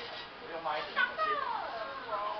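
A high-pitched voice speaking or calling, its pitch sliding downward over about a second, with the loudest part about a second in.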